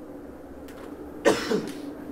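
A man coughs once, loudly, a little over a second in, after a quiet stretch of room tone with a faint steady hum.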